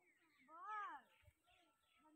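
A short, faint, high-pitched vocal cry that rises and then falls in pitch, about half a second in, followed by weaker voice-like sounds.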